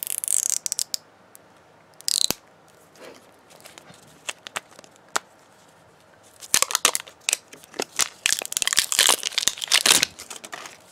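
Plastic wrapping on an LOL Surprise ball crinkling and tearing as it is peeled off by hand. It comes in bursts: one at the start, a short one about two seconds in, a few scattered clicks, then a dense crackling run over the last three and a half seconds.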